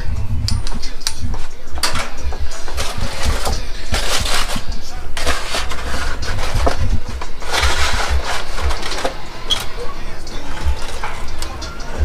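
Aluminium foil crinkling and rustling in repeated bursts as a cooked brisket is unwrapped from its foil-lined pan, over a low rumble.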